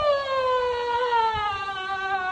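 A woman wailing as she cries with emotion: one long, high sustained cry whose pitch slowly falls.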